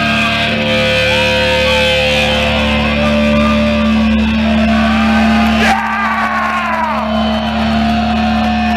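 Death metal band playing live through a club PA: distorted electric guitars hold a steady droning note while bent, sliding guitar notes wail over it, with no steady drumbeat. A single sharp hit lands about six seconds in.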